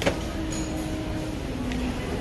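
Steady background noise of a large grocery store, an even hum and rumble, with one sharp click right at the start.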